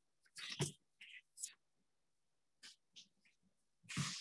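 Faint whispering and soft murmurs over a video call, in short scattered snatches with dead silence between them.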